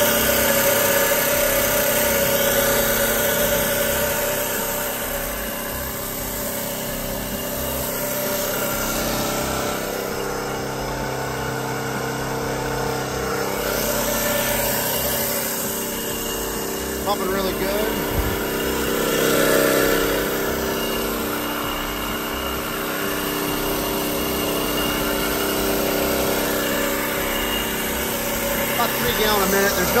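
Paragon PV32R marine transmission spinning on a test dyno, a steady mechanical whine and hum made of several held tones, its pump moving fluid through the test lines. A few brief knocks come a little past halfway.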